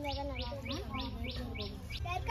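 A repeating high chirp, evenly spaced at about three a second, with a soft, wavering low tone beneath it; the chirps run on unchanged through a cut in the picture, so this is most likely an added background sound effect.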